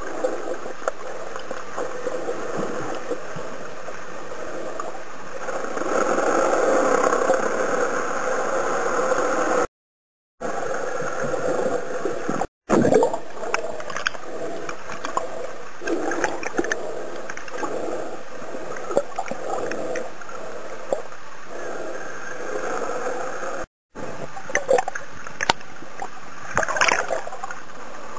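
Muffled underwater noise picked up by a camera held below the surface while snorkelling: a steady rushing with gurgles and small pops of bubbles, louder between about six and ten seconds in. The sound cuts out completely three times, briefly.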